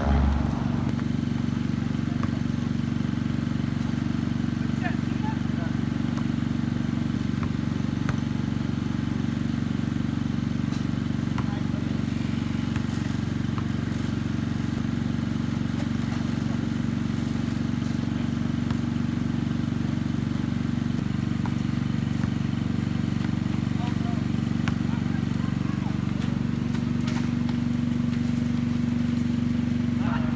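A steady low drone, like a motor running, that holds unchanged throughout, with faint scattered knocks of a basketball bouncing on the asphalt driveway.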